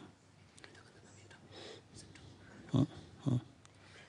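Low murmured and whispered talk between people close together, with two short spoken syllables near the end.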